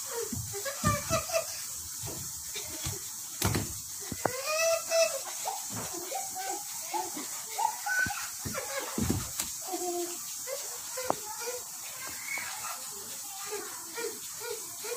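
Children's voices and chatter as they play a game, quieter than close speech, with a few short knocks.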